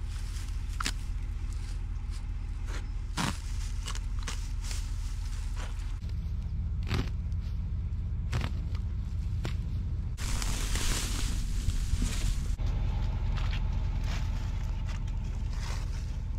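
Net wrap being cut and pulled off round hay bales: rustling and scraping of the plastic wrap and hay, with sharp clicks and a longer stretch of tearing rustle about two-thirds of the way through, over a steady low rumble.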